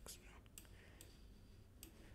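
Near silence: room tone with a few faint, sharp clicks spread through it.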